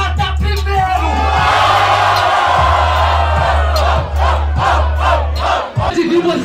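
Rap battle crowd erupting in shouts and cheers over a hip-hop beat, swelling about a second in, with a run of short shouts after the roar. The beat cuts off near the end.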